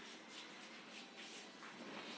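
Faint scraping and rubbing of a spoon stirring thickening pastry cream in an aluminium saucepan.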